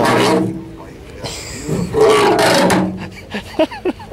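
A man's voice: two bouts of laughter and a few short, unclear syllables.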